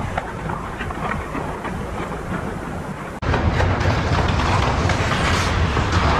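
Ice hockey play in an arena: skates scraping on the ice with faint clicks of sticks and puck over a steady low rumble. The sound breaks off sharply a little after three seconds in and comes back louder and deeper.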